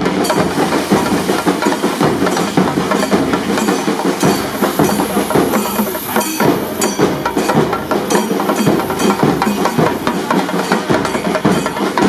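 Chenda drums beaten with sticks in a fast, dense, unbroken roll of strokes.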